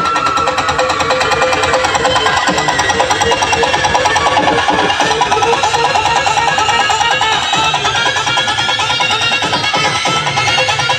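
Loud Gujarati DJ dance music from a truck-mounted outdoor speaker stack. It has a fast, steady beat under a melody line and keeps going without a break.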